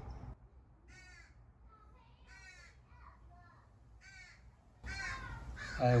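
Faint crow caws, about five short calls spread over a few seconds. Near the end, a brief rise of noise just before speech begins.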